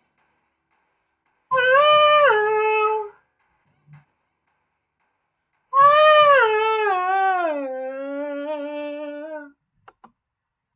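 A man singing a cappella: two long held notes high in his voice. The first steps down once; the second glides down in steps with a wavering into a lower held note.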